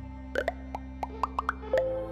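A quick run of cartoon pop sound effects, short bloops that slide up in pitch, over steady synth background music; near the end a louder hit as the music changes.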